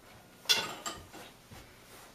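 Handling noise: one sharp knock about half a second in, then a smaller knock and a few faint clicks, as a man sits down on a stool holding an electric guitar.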